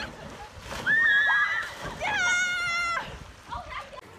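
Girls shrieking as they leap into a swimming hole: two long, very high-pitched held shrieks, one about a second in and another from about two seconds to three, over water splashing.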